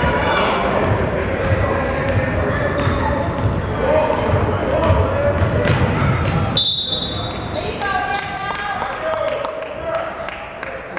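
Basketball bouncing on a gym's hardwood floor in a large echoing hall, with voices calling out from the court and sidelines. About two thirds of the way in comes one short, shrill referee's whistle blast.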